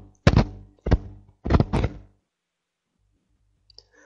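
Three short thuds through the voice-chat microphone, about half a second apart, followed by about two seconds of silence.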